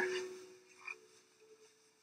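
Faint steady hum of two close tones in a quiet room, after a voice trails off at the start.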